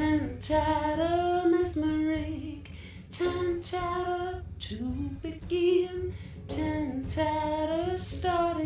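Female lead vocal singing a gliding melody in short phrases over a low, continuous backing in a studio-recorded song.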